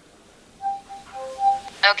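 A short electronic melody of pure beeping tones, several brief notes hopping between a few pitches, followed right at the end by a spoken "okay".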